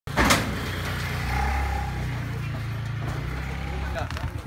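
A motor vehicle's engine running with a steady low rumble, after a single sharp knock about a quarter second in.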